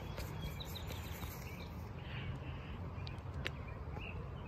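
Faint outdoor backyard background: a steady low rumble with a few faint high chirps and ticks, and one sharp click about three and a half seconds in.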